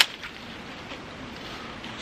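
Manual hedge shears cutting into a shrub: one sharp snip right at the start, followed by a low, steady background.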